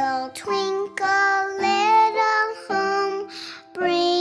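Children's song: a child's voice singing a melody over backing music.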